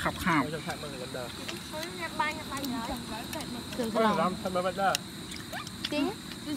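People talking in short bursts, over a thin, steady, high-pitched drone of night insects.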